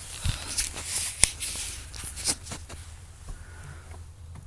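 Handling noise from a handheld camera being moved: a string of irregular light clicks and rustles, the sharpest a little over a second in, over a faint steady low hum.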